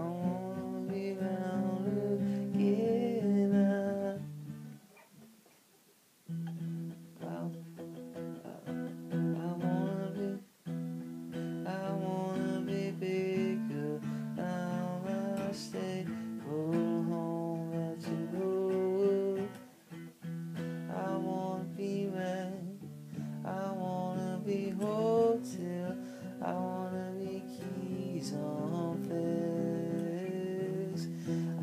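Acoustic guitar music, notes played in a steady flow, stopping briefly about five seconds in before starting again.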